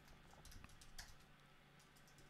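Faint computer keyboard typing: a handful of soft keystrokes, the clearest about a second in.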